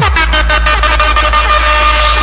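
Electronic dance music in a DJ competition remix: a deep, sustained bass note drops in suddenly under held high synth tones, with a fast run of rapid hits that fades away.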